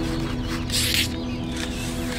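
Background music, with a short rustle of paper just under a second in as a sheet of origami paper is folded and creased by hand.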